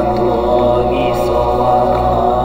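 Layered, looped vocal chanting of a Buddhist mantra: several voices holding steady pitches over a low drone. A brief breathy hiss comes about a second in.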